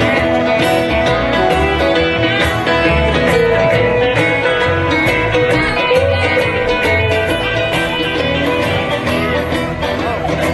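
Live country band playing an instrumental stretch of a song, guitars plucked and strummed over steady bass notes, with no singing.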